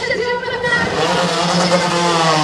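Engine of a portable fire pump revving up about a second in and held at high revs, as a firefighting-sport fire attack starts.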